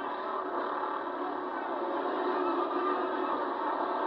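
Engines of a pack of pure stock race cars running on a dirt oval, blending into one steady drone heard thinly, without low end, through a camcorder microphone.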